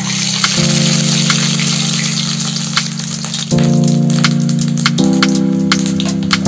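Coconut-filled pastry (pyaraki) sizzling as it goes into hot oil in a kadhai, a steady hiss of deep-frying that starts right at the beginning. Background music with held chords plays under it.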